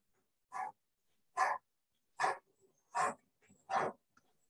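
A dog barking five times, short sharp barks a little under a second apart.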